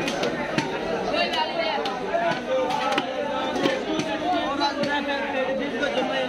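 Voices chattering throughout, with a few irregular sharp knocks of a knife blade striking a wooden chopping block as fish is cut into fillets.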